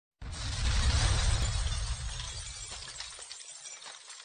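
Logo-reveal sound effect: a sudden crashing, shattering burst with a deep rumble beneath, starting just after the opening silence and fading away over about four seconds.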